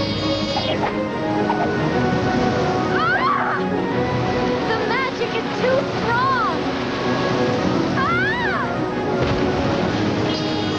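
Cartoon soundtrack: background music over a rushing noise, with several short rising-and-falling cries about three, five, six and eight seconds in.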